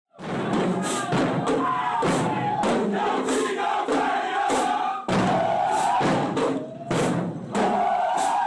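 A group of marching band members shouting and chanting together, with repeated cymbal crashes and drum hits cutting through.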